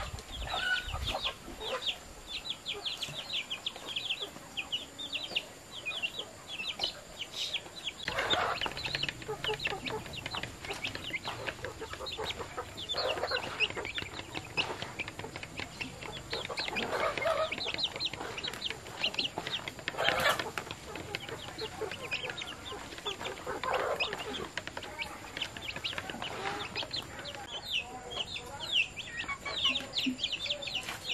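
Chickens: a constant fast, high peeping of chicks, with louder, lower clucks every few seconds.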